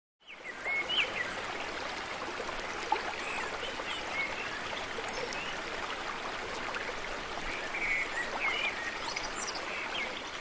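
Steady rush of flowing water, like a stream, with scattered short bird chirps over it.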